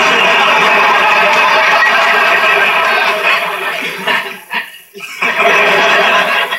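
Sitcom studio audience laughing loudly after a punchline, heard through a television speaker. The laughter dies away about four and a half seconds in, and a second burst of laughter rises near the end.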